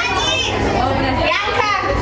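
Young women's excited, high-pitched voices: a shrill shout near the start and another about a second and a half in, over background chatter.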